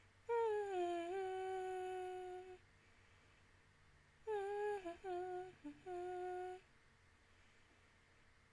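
A woman humming with her mouth closed in two short phrases. The first slides down onto a note held for about two seconds. The second, about four seconds in, is a few shorter notes.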